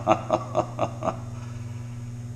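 A man chuckling: four or five quick short laughs in the first second, then they stop, leaving a steady low hum.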